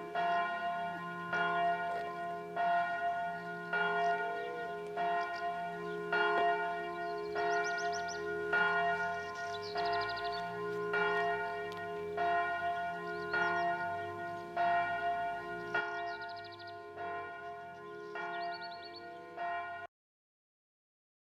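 Church bell ringing in a steady rhythm of about one and a half strokes a second, each stroke leaving a lasting ring, the sound cutting off just before the end.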